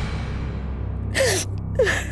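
A woman crying: two short, gasping sobs, each falling in pitch, about a second in and near the end, over low, steady background music.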